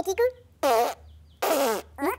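Cartoon character vocal sounds: a few quick syllables, then two longer wavering calls that slide down in pitch, and a short call near the end.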